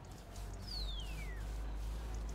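A bird's single clear whistle gliding downward in pitch for under a second, over a steady low outdoor rumble.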